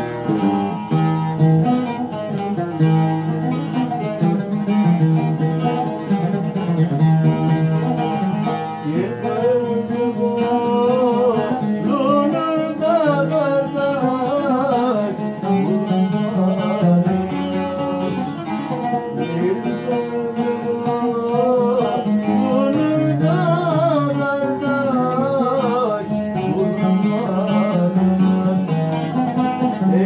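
An oud and a long-necked saz (bağlama) playing a Konya folk song (türkü) together, with a man's voice joining in about nine seconds in, singing a wavering, ornamented melody over the strings.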